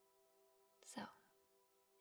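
Near silence over a faint, steady humming drone of ambient background music, with a woman softly saying a single word about a second in.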